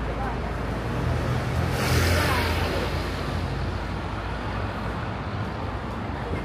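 City street traffic: a steady low engine hum, with a vehicle passing loudest about two seconds in, then fading.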